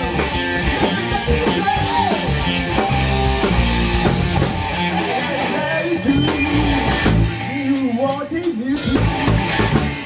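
Live rock band playing in a rehearsal room: electric guitar, bass guitar and drums, with the singer's voice. The low end drops away for stretches in the second half, leaving the guitar and the singing more exposed.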